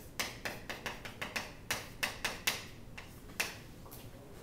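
Chalk tapping and scratching on a chalkboard as two words are written by hand: a quick, irregular run of short, sharp taps, then a single tap near the end.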